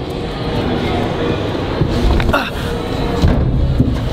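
Rustling and bumping handling noise as a person climbs into a woven deck storage box, with a few dull knocks and a low, uneven rumble on the microphone.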